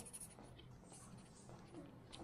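Faint scratching of a pen on paper as a drawing is shaded.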